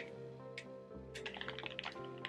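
Soft background music with sustained tones, under a scatter of light clicks and taps from small items being handled.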